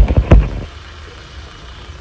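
Phone being handled and repositioned: a quick run of knocks and bumps on the microphone in the first half second or so, then a steady low hum.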